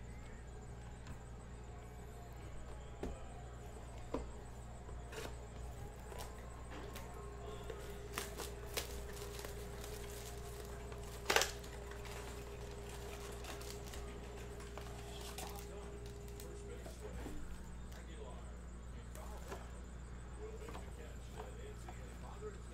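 Small clicks and rustles of a cardboard blaster box and foil card packs being handled and opened, with one sharper snap about halfway, over a steady low hum. A steady mid-pitched tone runs for about ten seconds in the middle.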